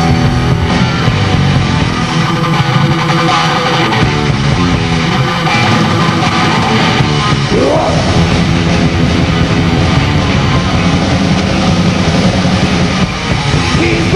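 Heavy metal band playing live: distorted electric guitars and drums, loud and continuous, with a rising glide in pitch about halfway through.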